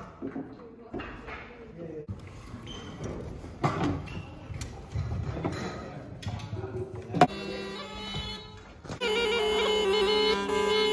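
Knocks and clatter of instruments being handled and set up, with a sharp click about seven seconds in. Then a bamboo wind instrument sounds a loud, steady, reedy held note over a low drone from about nine seconds in.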